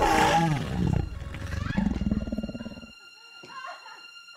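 A sudden loud roar that falls in pitch, then a low rasping growl for about two more seconds that cuts off at about three seconds in: a horror-film attacker's growl.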